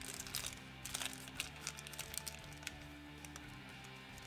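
Quiet background music with steady held tones, over scattered light clicks and rustles from hands handling small microphone hardware and plastic packaging.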